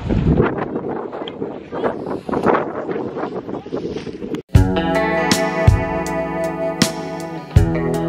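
Wind buffeting the camera microphone for the first half, then it cuts off suddenly about four and a half seconds in. Background music with guitar and a regular drum beat follows.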